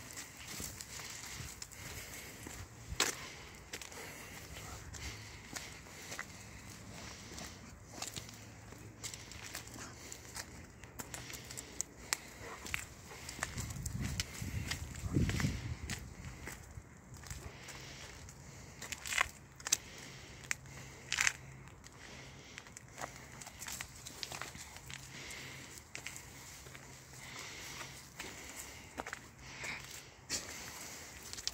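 Footsteps of a person and an Akita Inu on a leash on a paved path and dry leaf litter: irregular faint crunching and crackling, with a few sharper clicks and a brief low rumble near the middle.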